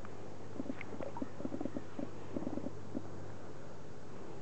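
Shallow river water gurgling and sloshing around a hand and a rainbow trout held in the current: a quick run of small splashes in the first three seconds, over the steady rush of the flowing river.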